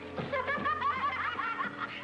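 Background film music under a brawl: a quick run of bouncing, chirping high notes that sounds like snickering, then a low held note near the end. A couple of thuds of the scuffle come near the start.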